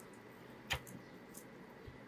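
Crisp fried coating of a chicken farcha cracking as it is torn open by hand: one sharp crack a little way in, then a couple of faint crackles.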